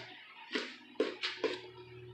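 Four soft footsteps on a hard kitchen floor, over a faint low steady hum.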